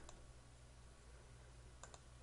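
Near silence: room tone with a low steady hum, and one faint click near the end as the presentation advances to the next slide.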